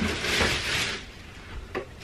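Plastic bags in a baby crib rustling as they are handled, for about a second, followed by a couple of faint light knocks.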